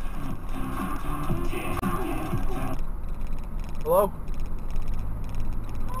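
Music and voice from a car radio playing inside the cabin, cutting off about three seconds in, leaving a steady low engine and road hum.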